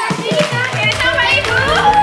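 Children's voices calling out over background music that starts right at the beginning and carries on.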